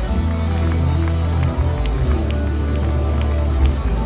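Rock band playing live, loud: electric guitars, drums and a heavy sustained bass line, recorded from among the audience in a club.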